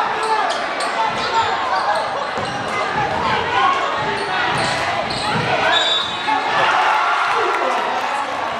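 Gym crowd talking and shouting during a basketball game, with a basketball bouncing on the hardwood floor and short sharp knocks, echoing in the large hall.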